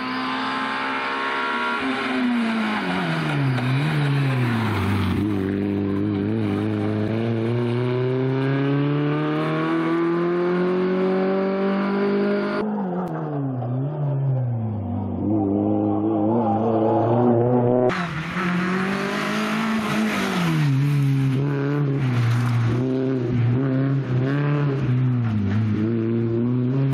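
Rally car engine driven hard along a stage, its pitch dropping as it slows for bends and climbing in long pulls under throttle. The sound changes abruptly twice.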